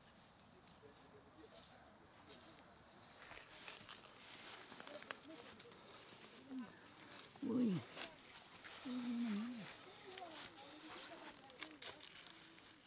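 Faint footsteps and rustling of leaves and undergrowth as a man walks a steep footpath carrying a person on his back, with a few short voice sounds in the middle, one falling sharply in pitch.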